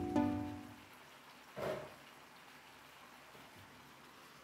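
Background music with plucked-string notes fades out within the first second. Then come faint sizzling of kangkong greens in a hot wok and one brief stir or scrape about a second and a half in.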